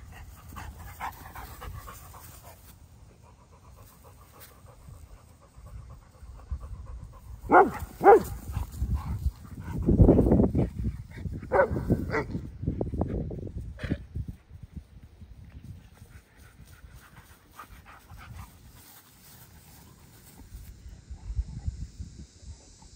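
Dogs playing rough in grass: panting, a couple of short sharp calls about a third of the way in, then a louder stretch of scuffling with more short calls in the middle.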